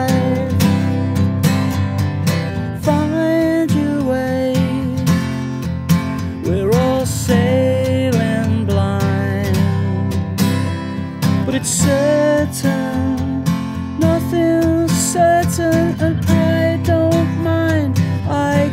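Strummed acoustic guitar playing a passage between sung verses, with a wavering melody line above it that slides upward about six seconds in.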